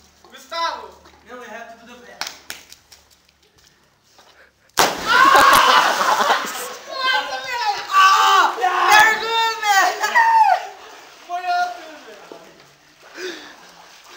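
A person belly-flopping into a swimming pool about five seconds in: a sudden loud slap and splash of water, followed by loud excited shouting.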